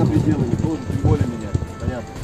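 A voice narrating over background music.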